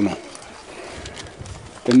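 A man's voice speaking, then a pause of under two seconds in which a bird calls faintly in the background before the voice resumes.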